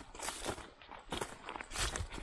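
Footsteps crunching on a dry dirt track strewn with dry leaf litter, several uneven steps in a row.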